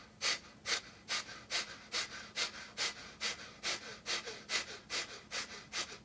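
A man's rapid, forceful exhales through the nose in a pranayama breathing exercise, a little over two a second, evenly paced, each a short sharp puff of air.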